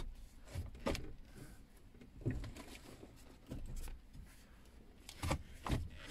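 Manual gear lever of a Land Rover Discovery being moved by hand with the engine off: a few faint clicks and knocks spaced a second or so apart, the shift going smoothly.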